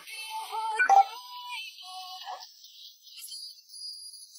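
Short, faint electronic music snippet: a few held, slightly wavering synth-like notes that fade out about halfway through, leaving a faint high tone.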